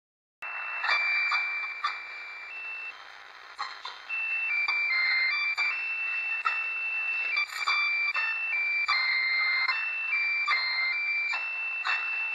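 ELPA portable AM radio tuned to 1561 kHz, picking up a computer's System Bus Radio signal: its memory-bus interference comes through as a simple tune of steady, high beeping notes, one at a time, over hiss, with crackles of static between the notes.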